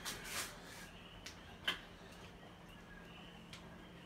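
A few faint clicks and a short rustle over a low steady hum, with one sharper click a little before halfway through.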